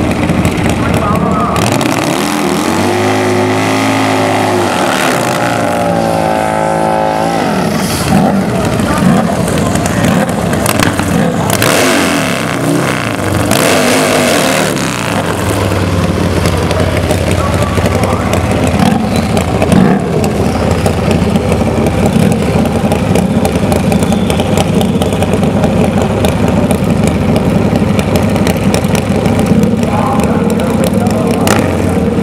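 Harley-based V-twin drag bike engine revving hard up and down for several seconds in a burnout, then idling steadily as the bike is staged.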